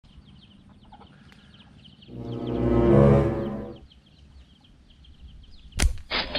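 Greater coucal calling: a deep, pitched call that swells and fades over about two seconds, over faint high chirping. A single sharp crack comes just before the end.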